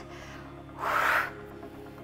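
A woman's forceful breath out, one short hissy huff about a second in, made on the effort of lifting dumbbells.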